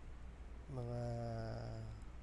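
A man's voice holding one long, flat, steady hesitation sound ('uhh'), starting a little past a third of the way in and lasting over a second. A low steady hum runs underneath throughout.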